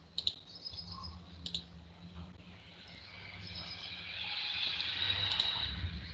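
A few sharp computer mouse clicks, one each about a quarter second in, a second and a half in, and five seconds in, over a low hum. A high hiss swells up from about three seconds in and fades near the end.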